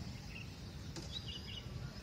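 Outdoor background noise: a steady low rumble, with a few faint bird chirps near the start and about a second in.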